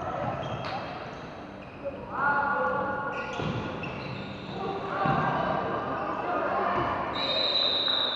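Floorball play in a large, echoing sports hall: players' shouted calls over knocks of sticks, ball and feet on the wooden floor. A steady high tone starts near the end.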